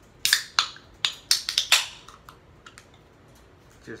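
Aluminium drink can being opened by its pull tab: a quick cluster of sharp cracks and short hisses as the tab is worked and the seal breaks, in the first two seconds, then a few faint clicks.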